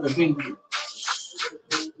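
A man's voice trails off at the end of a word, then there is a hissing breath in through a close headset microphone and a short mouth click just before speech resumes.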